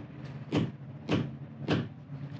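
A hammer strikes a metal button-setting tool on a wooden block three times, about half a second apart, smashing curtain buttons into place. A steady low hum runs underneath.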